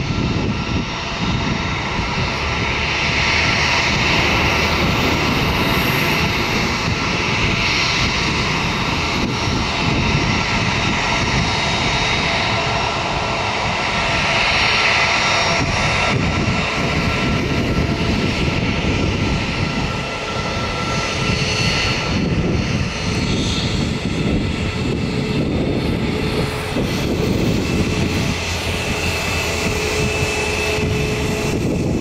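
Embraer KC-390's twin IAE V2500 turbofan engines running at low taxi power as the aircraft lines up on the runway: a steady whine with several held tones over a broad rushing noise.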